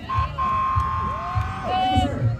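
An emergency vehicle siren sounding one long steady tone, then a second tone that rises and levels off near the end.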